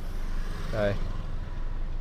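Steady low hum inside the cabin of a Nissan Terra with its engine idling and the air conditioning running.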